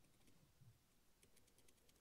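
Near silence, with a few faint light clicks in the second half.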